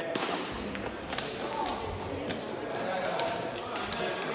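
Indistinct voices echoing in a large sports hall, broken by a few sharp knocks. The loudest knock comes about a second in, with others just after the start and near the end.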